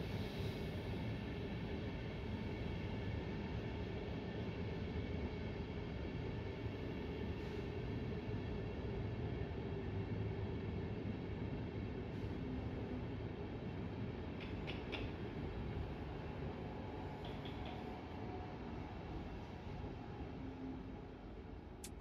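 Locomotive-hauled Intercity passenger coaches rolling slowly out along the platform: a steady low rumble that eases a little near the end.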